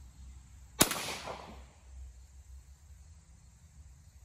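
A single rifle shot from a Marlin 1894 lever-action rifle chambered in .45 Colt, about a second in, trailing off in a short echo.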